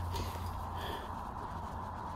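Steady low background hum and noise with no distinct event.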